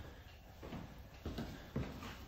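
A few faint scuffs and light knocks, mostly in the second half, from people moving on a concrete garage floor.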